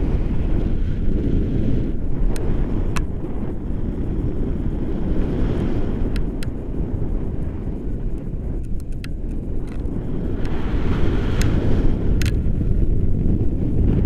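Airflow buffeting the camera microphone in paraglider flight, a steady low rumble with a few brief sharp ticks scattered through.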